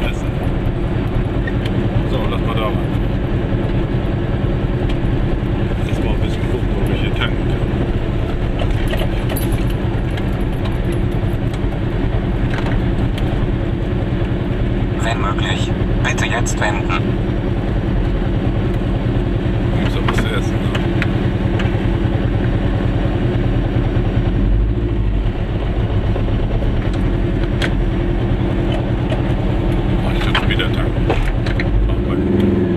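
Engine of a Goggomobil, a small air-cooled two-stroke twin, running steadily as heard from inside the car. It keeps running unbroken while the car rolls slowly up to the fuel pumps and stands there.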